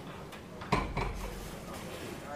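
Two sharp knocks about a quarter of a second apart, the first with a brief low thud under it, over faint room noise.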